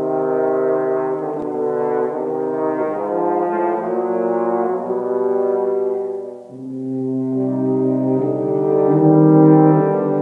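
French horn, trombone and tuba playing slow held chords together. There is a short break between phrases about six seconds in, and the playing grows louder afterwards.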